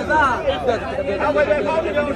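Several people talking over one another without pause: the busy chatter of a market crowd.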